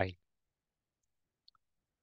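Near silence with one faint, short click about one and a half seconds in.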